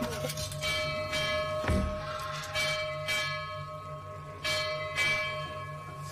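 A bell struck repeatedly, several strokes coming in pairs, each ringing on, over a low pulsing hum.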